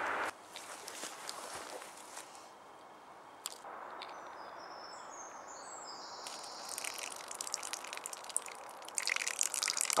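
Faint outdoor background noise with a few light clicks. From about six seconds in a denser, high crackle builds, getting louder near the end.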